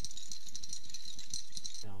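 Small resin model parts rattling inside a glass jar of acetone shaken by hand to wash off mould-release residue: a fast, steady rattle that stops near the end.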